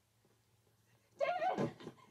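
A woman shouting a name in alarm, once, a little past the middle, after a stretch of near silence.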